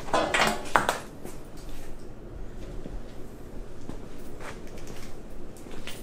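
Brief metallic clatter and clinks of parts or tools being handled in a workshop, loudest in the first second, followed by a few faint knocks.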